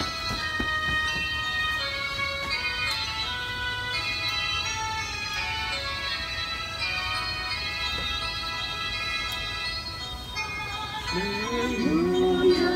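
Instrumental church music: a slow melody of held, organ-like notes that step from pitch to pitch. A voice begins singing about a second before the end, as the sung acclamation before the Gospel starts.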